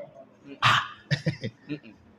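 A man laughing: one short breathy burst about half a second in, then a few quick, softer chuckles.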